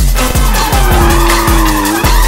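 A drift car sliding sideways, its tyres squealing, mixed under electronic music with a steady fast beat.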